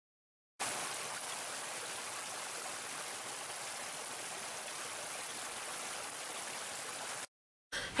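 Small stream cascading over rocks: a steady rushing and splashing of water that starts about half a second in and cuts off suddenly near the end.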